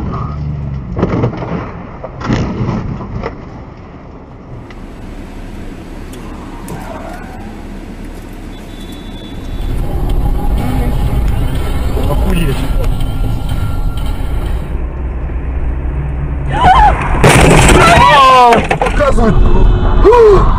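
Dashcam audio of road crashes: two thuds in the first few seconds as a caravan-towing ute collides with a truck, then steady engine and road rumble that grows louder about halfway. Near the end a person cries out loudly, the voice rising and falling sharply in pitch.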